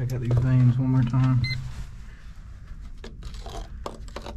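A man talking for the first second and a half, with one short electronic beep from a handheld pinpointer metal detector held against the mine's rock wall. After that come a few light taps and scrapes.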